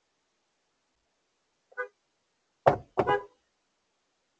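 Car horn chirping as a car is locked with its key fob: one faint short beep, then two louder short beeps in quick succession near the end.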